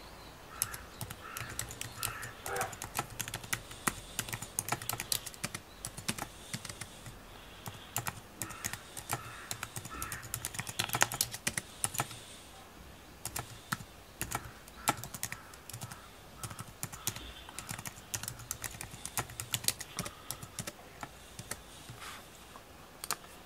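Rapid, irregular flurries of sharp clicks, with a short pause a little past the middle.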